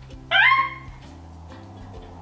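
A woman's short high-pitched squeal of laughter, rising in pitch, about a third of a second in, over soft background music with steady low notes that change at about a second in.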